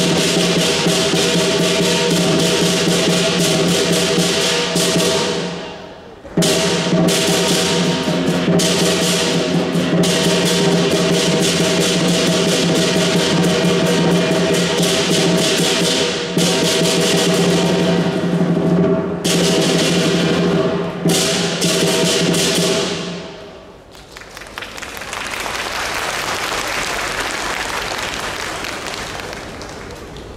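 Southern Chinese lion dance percussion: a large lion drum with clashing cymbals and gong playing a continuous, dense rhythm. It cuts off briefly about six seconds in, stops again about 23 seconds in, and a steady wash of noise swells and fades after it.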